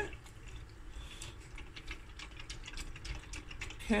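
Wire balloon whisk stirring a thin cornflour-and-water mix in a glass measuring jug: rapid, irregular clicks of the wires against the glass over a light liquid swish.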